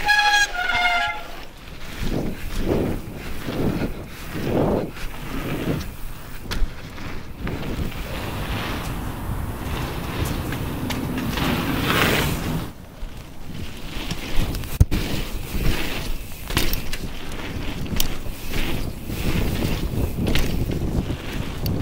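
Wind buffeting an action camera's microphone over the rolling of mountain bike tyres on a packed-dirt pump track, swelling and fading every second or so as the bike rolls over the bumps. A brief high squeal of two falling notes sounds in the first second.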